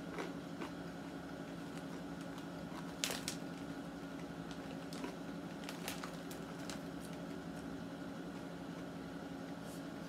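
Faint, scattered crunches and clicks of someone chewing crunchy glazed caramel popcorn, the loudest about three seconds in, over a steady low hum.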